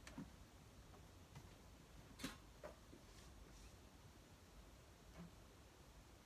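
Faint, scattered taps and knocks of books being set and slid onto a bookshelf over near silence, the clearest a little over two seconds in.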